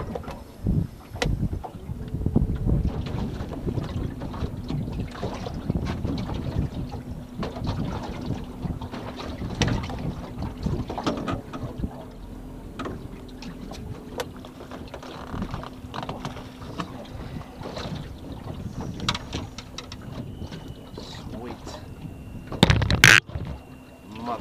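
Wind buffeting the microphone and water slapping against the hull of a small aluminium boat, with a steady low hum from about two seconds in. A loud, sharp knock comes near the end.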